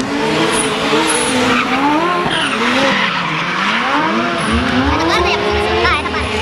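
Drift car engine revving up and down again and again, with tyre squeal as the car slides round the track. A low throbbing joins about four and a half seconds in.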